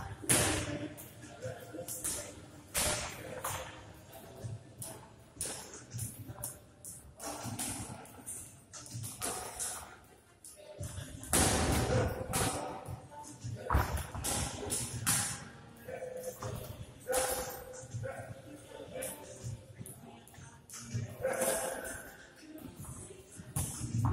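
Boxing sparring: gloved punches landing and feet shuffling on the ring canvas, a run of irregular short thuds, heard under background voices and music in the gym.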